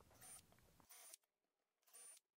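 Near silence, with two faint brief sounds about a quarter second and a second in.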